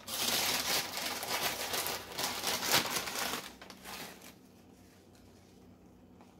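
Vanilla wafers being crunched and crushed by hand, a dense crinkling crackle that lasts about three and a half seconds, loudest just before it fades away.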